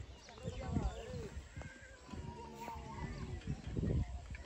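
Several people talking indistinctly, with a couple of faint clicks in the middle.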